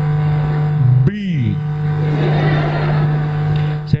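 Steady electrical hum through the microphone and PA, with a rushing noise building from about two seconds in and a man's short spoken word about a second in.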